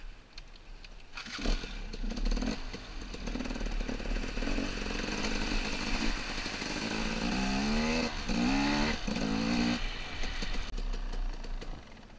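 Dirt bike engine pulling through a muddy water crossing, with water splashing. About seven to ten seconds in it revs up three times in quick rising surges, then drops back and quietens near the end.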